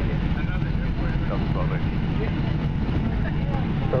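Steady low rumble of a Boeing 757's cabin in flight, engine and airflow noise, on final approach.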